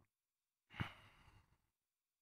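A man's single sigh, a short breath out about two-thirds of a second in that fades within a second; otherwise near silence.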